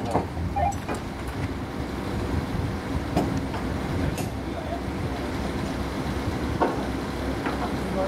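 A crane's engine running at a steady low rumble, with faint voices of workers over it.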